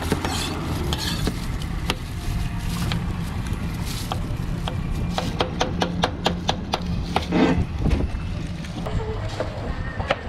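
A cleaver shaving the skin off a pineapple on a plastic cutting board: scraping strokes at first, then a fast run of sharp knocks from about halfway, over a low steady hum.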